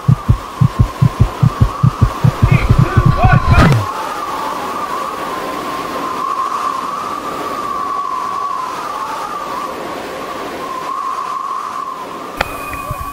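A fast run of low thumps, about five a second and quickening, breaks off suddenly about four seconds in. After it comes a steady, wavering whistling rush of air during a bungee jumper's free fall.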